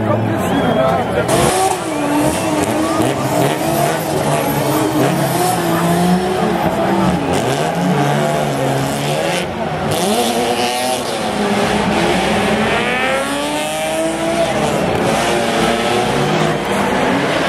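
Drift car's engine revving up and down hard while its rear tyres squeal and skid through a sustained drift.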